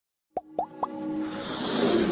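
Logo-animation intro sound design: three quick pops, each sliding up in pitch, about a quarter second apart, then a swelling whoosh with held music tones building up.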